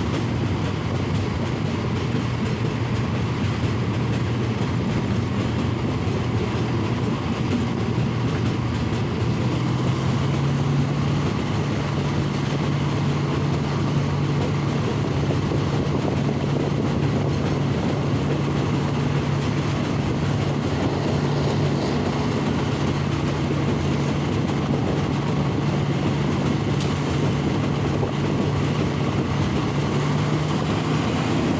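Passenger train running along the track, heard from a carriage window: steady rumble and rail noise. A low hum under it steps up slightly in pitch about ten seconds in.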